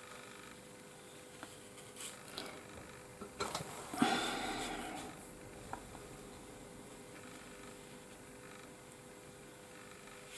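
Faint strokes and dabs of a round watercolour brush laying clear water onto paper, with a brief, louder soft rushing noise about four seconds in.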